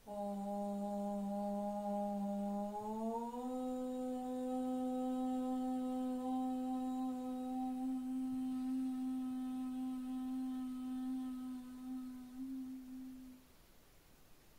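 A woman chanting a single long Om to close a yoga practice: one held note that steps up slightly in pitch about three seconds in and stops shortly before the end.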